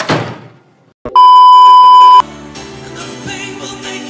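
A short sound at the start, then a loud, steady, high beep of a single pitch lasting about a second, the classic censor-bleep tone, which cuts off sharply. Live rock band music follows.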